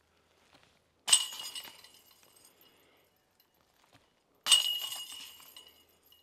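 Discs putted into a disc golf basket, striking the metal chains twice, about three and a half seconds apart. Each hit is a sudden chain clash followed by jingling and a ringing metallic tone that dies away.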